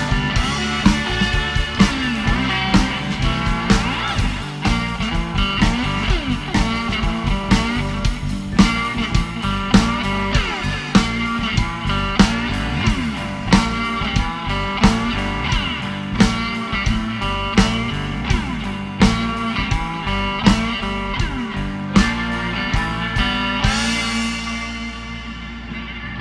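Live blues band playing an instrumental passage: electric guitar lead with bent notes over bass guitar, drum kit and keyboard, on a steady beat.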